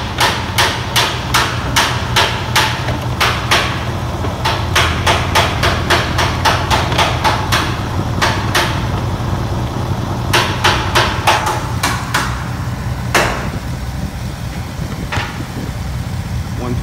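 Car engine idling with a steady low hum, and loud sharp knocks over it about twice a second. The knocks stop about eight seconds in, come back in a short run, then fall to a few spaced-out knocks near the end.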